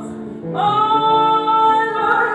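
A woman singing live with an orchestra accompanying her, holding one long note that begins about half a second in.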